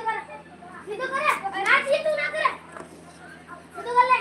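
A child talking loudly in a high voice for about a second and a half, starting about a second in, with brief voices at the start and the end.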